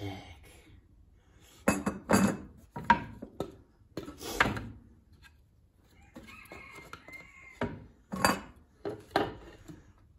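Deer antlers knocking and clacking against a plywood cutout and the workbench as they are handled and set in place: a series of separate hard knocks, loudest around two and four seconds in, with more near the end.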